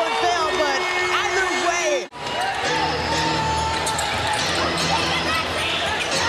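Live basketball game sound: a ball dribbling on a hardwood court and sneakers squeaking, over arena crowd noise. The sound breaks off briefly about two seconds in and resumes with a held tone and a steady low pulse under the crowd.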